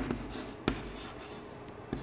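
Chalk writing on a blackboard: faint scratching of the chalk with three short sharp clicks as it strikes the board.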